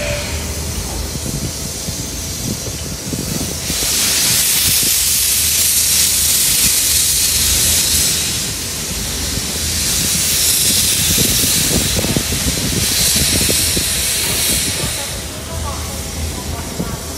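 A steam locomotive venting steam from its cylinders as it moves slowly out of the shed: a loud hiss in three long spells, each lasting a few seconds, over a low rumble.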